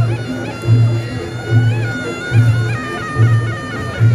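Reog Ponorogo gamelan: the slompret, a shrill double-reed trumpet, plays a wavering, ornamented melody over deep, even beats a little under a second apart and a quicker pulsing rhythm between them.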